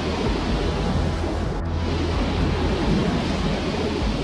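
A steady rushing noise over a low, constant hum, with no clear events in it.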